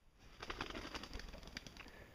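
Faint outdoor ambience with distant bird calls and a few light ticks.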